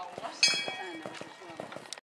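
A horse's hooves cantering on a sand arena just after landing over a show-jumping fence. About half a second in comes a sudden metallic ring that dies away within about half a second.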